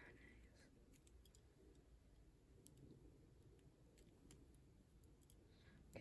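Near silence: room tone with a few faint, scattered clicks from a metal crochet hook working rubber loom bands.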